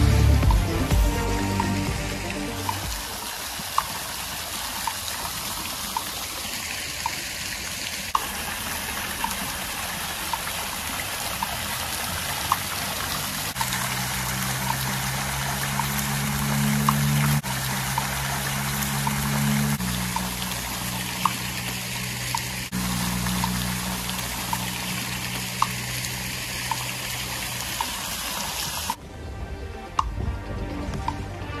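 Background music with slow, held bass notes and a light ticking beat, over the steady hiss and splash of an ornamental fountain's water jets. The water sound cuts off near the end.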